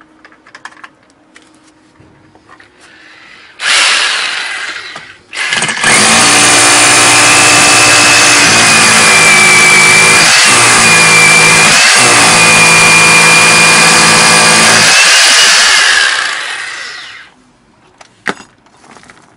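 Bosch GBH 4-32 DFR rotary hammer drilling into a concrete block. After a few faint handling clicks there is a short trigger pull about four seconds in, then about ten seconds of loud, steady running with a high motor whine and two brief dips, winding down near the end.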